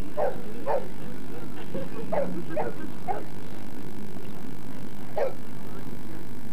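Boxer dog barking about six times in short separate barks: two at the start, three more around the middle, and a last one near the end.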